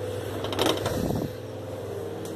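Steady hum of a running kitchen appliance, with a brief scrape and rustle a little over half a second in.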